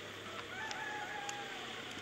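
A rooster crowing once: a single drawn-out call lasting about a second and a half, which sinks a little in pitch as it ends.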